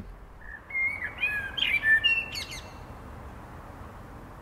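A songbird sings one short phrase of clear whistled notes that slide up and down, ending in a high twitter about two and a half seconds in. After that only a faint steady outdoor hiss remains.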